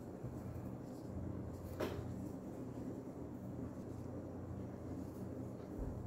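Faint handling sounds of a crochet hook working thick t-shirt yarn over a steady low room hum, with one small click about two seconds in.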